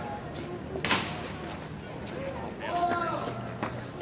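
Indistinct voices of people talking, with one sharp knock or slam just under a second in.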